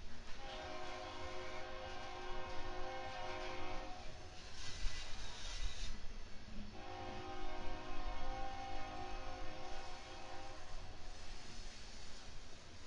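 Loaded rock hopper cars of a freight train rolling past with a steady low rumble, while a multi-chime locomotive horn sounds two long blasts of about four seconds each, the second starting about two seconds after the first ends.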